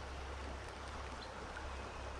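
Creek water running steadily: a faint, even hiss.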